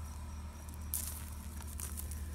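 A brief rustling scrape about a second in, over a low steady rumble.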